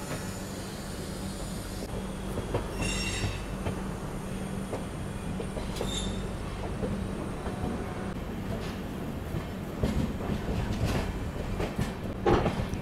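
Passenger train running out through a station yard, heard from an open coach door: a steady low hum under the running noise, the wheels squealing briefly about three seconds in and again around six seconds, and wheels clicking over rail joints and points in the last few seconds.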